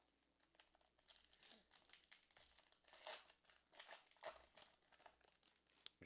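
Wrapping of a football trading-card pack being torn and crinkled open, in faint, irregular crackles.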